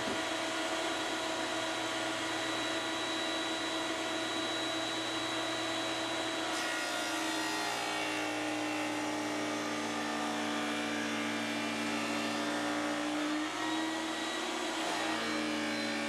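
Table saw fitted with a dado blade, running steadily as it cuts a half-inch-wide, quarter-inch-deep groove along a pine board. The sound grows brighter and rougher about six and a half seconds in.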